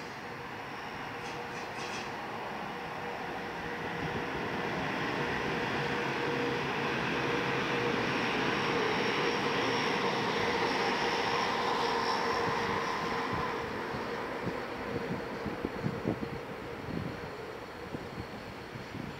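A locomotive-hauled electric regional train passing on a far station track: the rumble of wheels on rail with a steady hum swells to its loudest about halfway through, then fades. A few sharp knocks come near the end.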